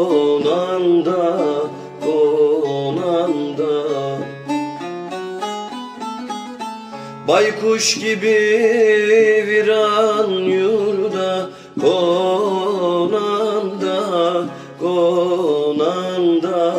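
Instrumental break in a Turkish folk song (türkü), with a plucked string instrument carrying the melody. A run of quick plucked notes comes near the middle, then the fuller ensemble comes back in.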